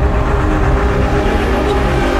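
Cinematic logo-intro sound design: a deep, steady rumble with sustained low tones held over it.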